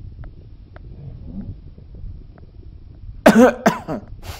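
A man coughing: two loud, harsh coughs in quick succession a little after three seconds in, following a stretch of low background noise.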